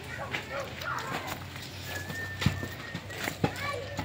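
Hand pruning shears snipping through twigs: two sharp clicks about a second apart, the first the louder, over children's voices in the background.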